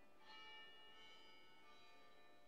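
Very faint, bell-like ringing tones at near-silent level: a few notes start about a quarter second and a second in and linger.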